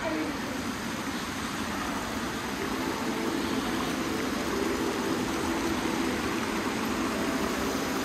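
Indoor fountain's water jets splashing into a stone basin: a steady rushing hiss that grows a little louder partway through.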